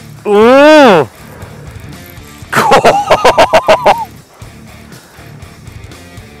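A man's long excited cry, rising and then falling in pitch, then a burst of about eight short laughs, over quiet background music.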